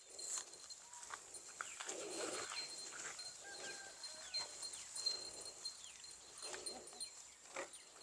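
Faint rustling footsteps through dry grass and brush, in soft bursts, over a steady high-pitched insect drone with a few short chirps.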